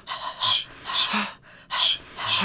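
Sharp, breathy human exhalations, three short hissing breaths in a steady rhythm about two-thirds of a second apart.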